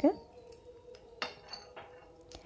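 Wooden spatula scraping and knocking lightly against a kadai while fried almond and cashew slivers are scooped out, a few short clicks and scrapes a little over a second in.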